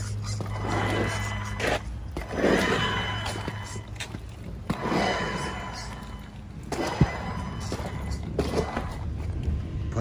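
Music playing over repeated bursts of a Redcat Kaiju RC monster truck driving on wet concrete, its electric motor revving and its tyres hissing through the water, roughly every second or two.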